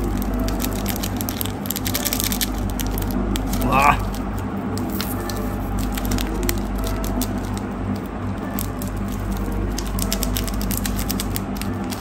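A small plastic seasoning sachet crinkling and tearing in the fingers, with light scattered crackles, over a steady low hum.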